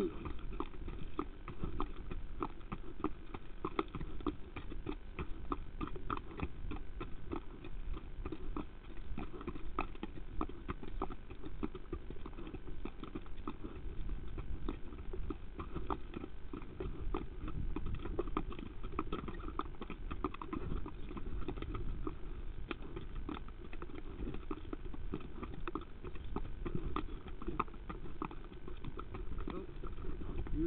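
Hoofbeats of an exercising horse, a quick, continuous run of repeated thuds over a steady low rumble.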